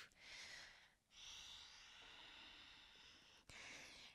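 Very faint, slow breathing picked up close on a head-worn microphone: a short breath, a break about a second in, then one long breath, with a light click near the end.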